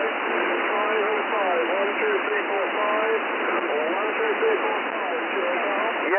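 Shortwave receiver audio from the 40 m band in lower sideband: a steady, thin-sounding hiss of band noise and interference (QRM), with weak, garbled voices buried under it that can't be made out.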